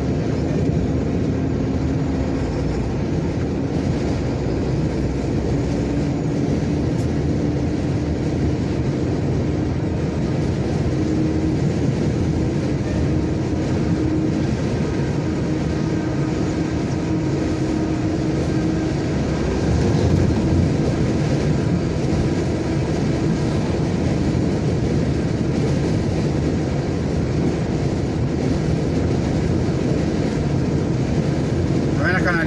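Steady engine drone and tyre rumble of a vehicle driving on a highway, heard from inside the cab, with an engine note that rises slowly and a briefly louder spell about two-thirds of the way through.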